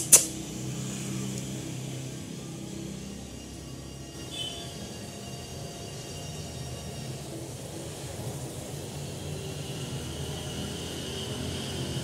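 A steady low mechanical hum, with a sharp click right at the start.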